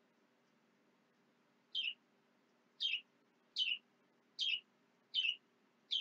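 A bird calling the same short, high, falling chirp over and over, about one every 0.8 seconds, starting about two seconds in. A faint low hum lies under it.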